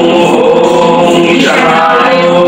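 Several voices chanting together in unison in long held notes, with a brief break about one and a half seconds in before the next held note.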